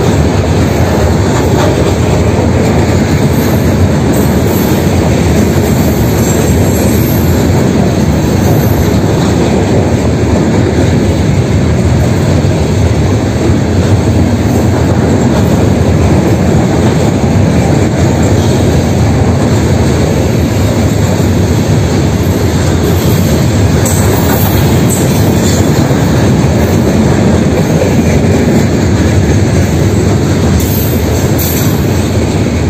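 Freight train's gondola cars rolling steadily past close by: a loud, unbroken rumble of steel wheels on the rails.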